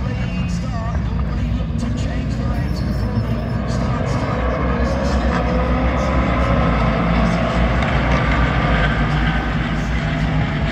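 Race car engines approaching on the circuit, growing louder from about halfway in, with people talking.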